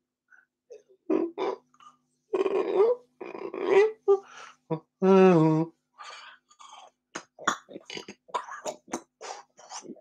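A man's wordless vocal improvisation, unaccompanied: short grunting and breathy vocal bursts, a brief held sung tone with a wavering pitch about five seconds in, then a quick run of short percussive mouth sounds.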